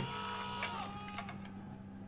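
Quiet passage of a TV drama's soundtrack: several held tones sound together, one sliding down in pitch about two thirds of a second in, with a few faint ticks, fading slightly.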